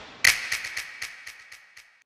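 A sound effect on the title card: one sharp crack, then a quick run of about ten fading crackles that die away near the end.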